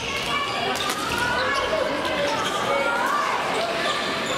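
Badminton rackets hitting shuttlecocks on several courts, heard as scattered sharp cracks. Around them is a steady mix of players' and spectators' voices echoing in a large sports hall.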